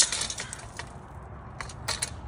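A loud crash right at the start as the small red table's glass top shatters and its metal frame goes over. Shards then tinkle and skitter across the asphalt for about half a second. A couple of small clinks follow near the end.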